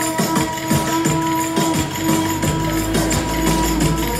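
Live Turkish folk dance music (oyun havası) from a Kastamonu ensemble: long held melody notes over quick, steady drum strokes.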